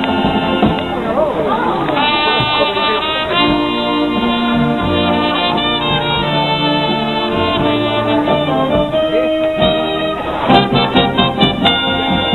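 Police wind band playing live: brass and saxophones hold sustained chords that change every second or so. The playing turns busier and more rhythmic near the end.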